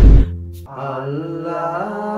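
A loud thud right at the start, then a man's voice chanting a supplication prayer in long, drawn-out, melodic notes.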